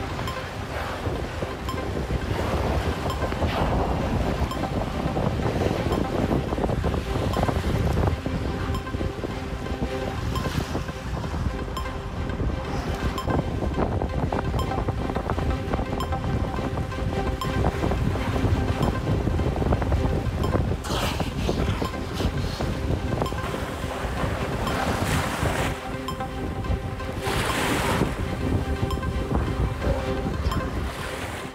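Shallow surf washing onto a sandy beach, with wind buffeting the microphone in a steady rumble. A few louder surges of surf come in the last ten seconds, and a faint steady music bed runs underneath.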